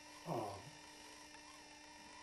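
A man's voice says a hesitant "um" about half a second in, then a pause of faint room tone with a steady low hum.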